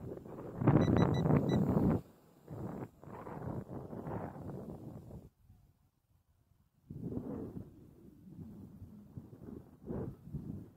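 Gusty wind buffeting the microphone, loudest in the first two seconds, with a lull of about a second and a half in the middle. About a second in, a few quick high beeps come from the drone's transmitter as the pilot switches to second rate.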